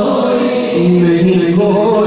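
Unaccompanied devotional singing of an Urdu naat by men's voices: long held, wavering notes that step down to a lower pitch about two-thirds of a second in.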